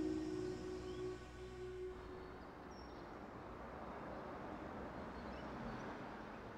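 A few soft, held music notes die away about two seconds in. They leave a faint, steady outdoor background hiss with a couple of faint high chirps.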